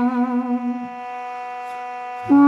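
Armenian duduk holding a long note with a wavering vibrato, which ends a little under a second in, leaving a quieter steady drone sounding on.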